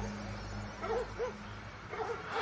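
A dog yipping three times in quick succession, about a second in, fairly faint.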